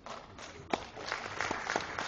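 Audience applauding: a spread of hand claps that builds up quickly and keeps going.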